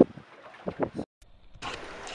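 A few spoken words, then the sound drops out for a moment; a little over one and a half seconds in, a steady hiss of wind and water around a small boat comes in.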